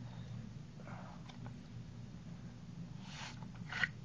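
A few short crinkling rustles of plastic shrink wrap being pulled off a Blu-ray case, the loudest near the end, over a low steady hum.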